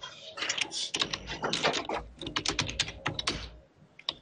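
Typing on a computer keyboard: a quick, irregular run of key presses that stops shortly before the end.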